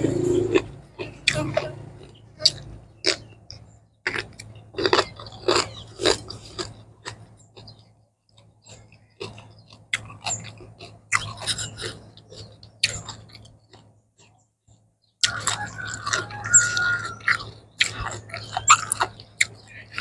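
Close-up chewing and biting of crisp vegetables, irregular crunches with short pauses between mouthfuls; the crunching grows dense again about three-quarters of the way through.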